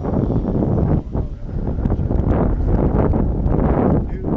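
Wind buffeting the microphone: a loud, gusty rumble with no engine or motor tone in it, dipping briefly about a second in.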